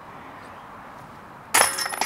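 A putted disc hitting the steel chains of a DiscGolfPark disc golf basket about one and a half seconds in: a sudden metallic clash, then the chains keep jingling and ringing. The putt is made; the disc drops into the basket.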